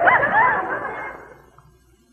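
Studio audience laughter dying away, with a few high, yelping laughs near the start, fading out about a second and a half in.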